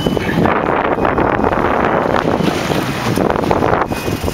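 Wind buffeting the microphone on a boat at sea: a loud, steady rushing noise.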